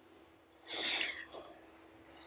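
A person's single short, breathy exhale near the microphone, about half a second long, a little under a second in.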